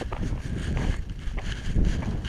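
Footsteps on dry gravelly dirt, about two a second, with wind rumbling on the microphone.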